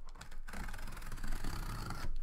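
A sealed cardboard case being handled and shifted on a table: a continuous scraping, rubbing sound of cardboard that thickens about half a second in.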